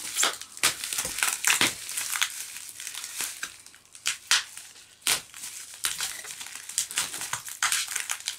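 Plastic parcel wrapping (black bin-bag plastic and cling film over bubble wrap) being picked at and torn open by hand, making irregular crinkling and crackling, with a quieter stretch about halfway through.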